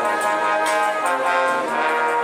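A brass band playing: trumpets, trombones and tubas sound held, changing chords over a drum kit whose cymbal and drum strokes keep the beat.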